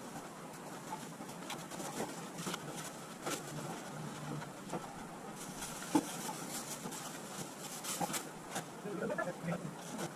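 Scattered light knocks and thumps of cardboard boxes and plastic storage bins being handled and stacked, with one sharper knock about six seconds in.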